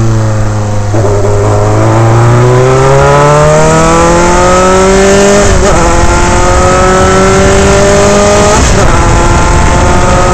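Onboard sound of a Dallara Formula 3 car's Alfa Romeo four-cylinder racing engine, loud, its revs sagging through a slow corner, then climbing hard under full acceleration. Two upshifts cut the pitch, one about halfway through and one near the end, and each time the revs climb again.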